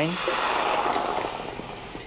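Sherry wine poured into a hot sauté pan of butter and minced garlic, hissing and sizzling as it hits the hot fat, loudest at first and dying down over the next two seconds.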